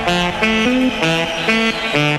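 Background music: a quick melodic line of short notes, about four or five a second, at a steady beat.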